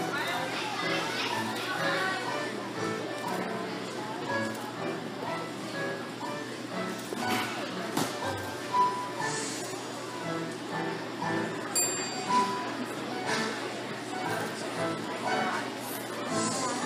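Gym hall ambience: music playing in the background under the chatter of children and adults, echoing in the large room. Two short high beeps sound about nine seconds in and again about three seconds later.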